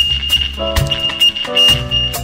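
Reggae band playing live in an instrumental passage: bass, drum hits and chords, with a steady high tone held through it.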